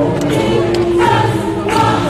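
Gospel choir singing held notes, moving to higher notes about halfway through.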